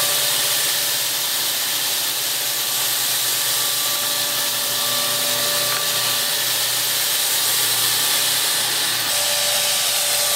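Corded electric handheld fogger (SuperHandy) running steadily, its blower motor forcing a fine mist out of the nozzle: a steady motor whine over a hiss.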